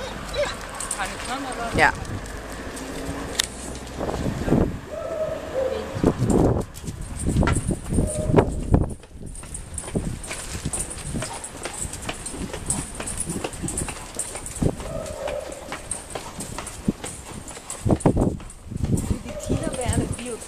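Hurried footsteps on a paved pavement, walking and then jogging, mixed with knocks and rustle from a camera carried on the move; the steps come as many short irregular thuds through most of the stretch.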